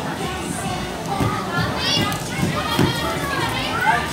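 Children playing and shouting, with high rising and falling squeals, over mixed chatter.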